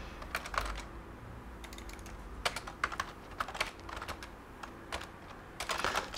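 Computer keyboard typing: irregular runs of quick keystrokes with short gaps between them.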